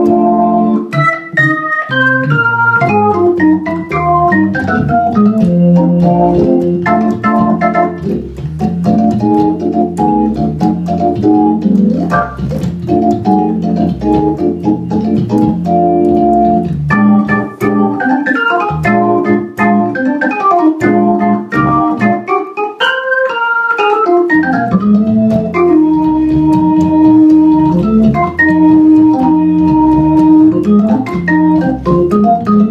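Hammond SK2 dual-manual organ played through a Leslie 3300 rotating speaker: jazz organ with fast runs up and down the upper manual over left-hand chords and a bass line, ending on a long held chord.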